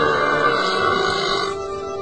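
A man's loud, drawn-out moo-like cow call that stops about a second and a half in, over steady background music.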